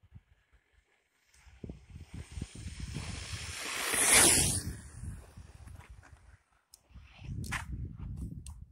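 Brushless-motor 1/10 RC truck (Adventurer 9203E with a 2845 5900kv motor) running flat out toward and past on asphalt. A rushing mix of motor whine and tyre noise rises, peaks sharply about four seconds in as the truck passes close, then fades away.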